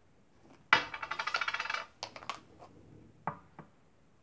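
Hard vitamin C tablets rattling inside their plastic tube as it is shaken for about a second, followed by a few light clicks and taps as a tablet comes out.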